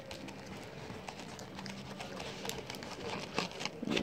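A person chewing a mouthful of fried chicken sandwich topped with Cheetos, with faint wet mouth sounds and a few crisp crunches, two of them stronger in the second half.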